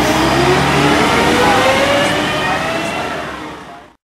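Volvo B10M Mk3 bus with a ZF automatic gearbox accelerating away from a stop, its underfloor six-cylinder diesel rising in pitch, dropping once about a second in as the gearbox changes up, then climbing again. The sound fades out over the last second or so.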